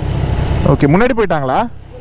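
Triumph Trident 660's three-cylinder engine idling steadily, a low even rumble.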